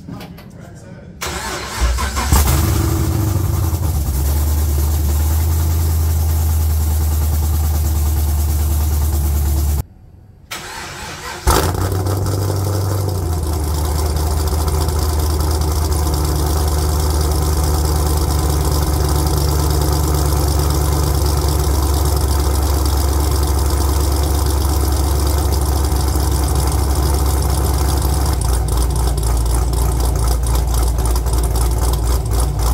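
A cammed LS3 V8 with a BTR Red Hot cam cranks and fires on its first start-up with a fresh start-up tune, then idles loud and open with no exhaust fitted. After a short gap in the sound about ten seconds in, it idles on steadily.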